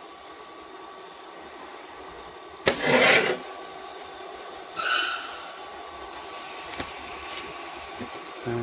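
Handling of a stainless steel cover plate and its plastic disc over a low steady background hiss. There is a brief scraping rub about three seconds in and a short high squeak about two seconds later.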